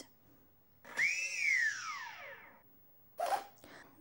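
Brushless motor of an RC model plane giving one brief turn: a whine that rises for a moment, then falls steadily in pitch over about a second and a half as it winds down. This is the normal single motor turn when the Byme-A flight controller finishes its attitude calibration. A short scuff follows near the end.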